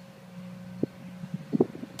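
A steady low hum with a few faint clicks between shots. A .22 pistol shot from a Ruger 22/45 Mark III cracks out sharply right at the very end.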